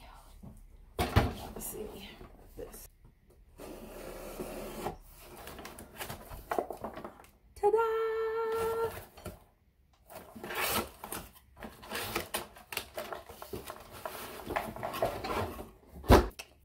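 A cardboard shipping box is handled and opened on a tabletop: a knock as it is set down about a second in, then rubbing and scraping of cardboard as it is opened and the boxed laptop is slid out. A short held hummed or sung note comes near the middle.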